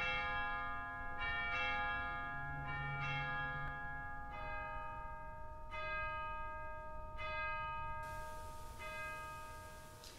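Bells struck one at a time, about one stroke every second and a half, each note ringing on under the next; about four seconds in, the notes step lower.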